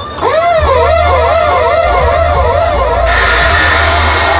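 Dub reggae playing loud through a sound system, steady bass under a repeating swooping electronic tone that rises and falls about three times a second, typical of a dub siren effect. About three seconds in a loud burst of hiss comes in over it.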